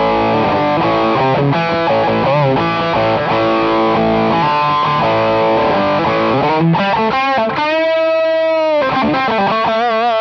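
Distorted electric guitar, an Attila custom guitar played through a mic'd amp, picking single-note lead lines with string bends. Near the end one note is held long, then wavers with vibrato.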